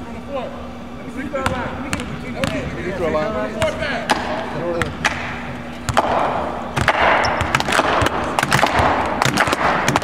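Basketball bouncing sharply and repeatedly on a hardwood court, over the chatter of a small crowd in a large gym. About six seconds in, the crowd noise swells and the bounces come thicker.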